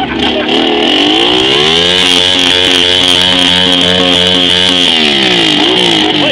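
Cruiser motorcycle engine revving up about a second in, held at high revs for about three seconds, then dropping back near the end, with a steady high hiss over it, as the rear tyre spins on the grass in a burnout.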